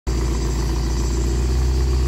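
Alfa Romeo 75 2.0 Twin Spark's inline-four engine idling steadily, heard at the tailpipe through its newly fitted rear silencer, with a deep, even exhaust note.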